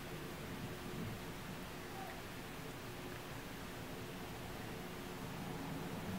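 Quiet, soft rustling of a foundation brush buffing liquid foundation into the skin of the face, over a low steady hiss and faint hum.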